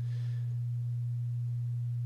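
A steady low electrical hum: one unchanging tone with no rise or fall, with a faint brief hiss right at the start.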